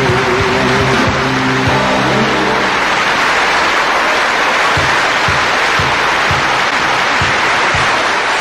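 A live band's final held chord dies away a few seconds in, and a large concert audience applauds, with short low thumps about twice a second under the applause.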